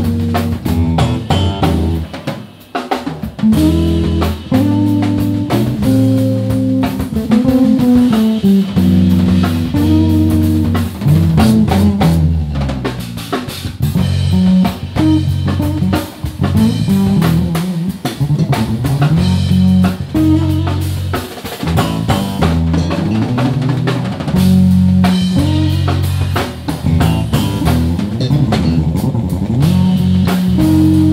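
Two electric bass guitars and a drum kit playing together live: moving bass lines over a steady drum groove, with a brief drop in loudness about two seconds in.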